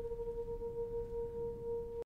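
A single steady pure tone held without change, with a fainter tone an octave above it: a sustained drone note in a TV drama's score. It cuts off abruptly at the end.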